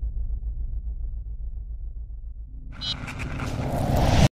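Logo sting sound effects: a deep, slightly pulsing rumble, then from about two and a half seconds in a rising swell of noise with a brief high ring, building into a burst near the end.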